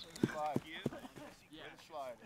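Football practice ambience: faint, short shouts from players on the field, with a few sharp knocks in the first second.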